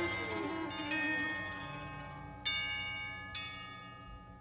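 Six-piece ensemble music fading out. Sharp single notes sound about a second in, at about two and a half seconds and near the end, and each rings on and dies away.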